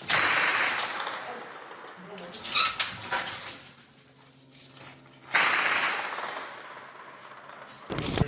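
Two sudden loud blasts in urban combat, one at the start and one about five seconds later, each trailing off in a rushing noise over a second or more. A shorter sharp burst comes in between.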